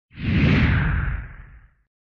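Whoosh sound effect of a channel logo intro: one swell of noise with a deep rumble beneath it, rising quickly and fading away in under two seconds.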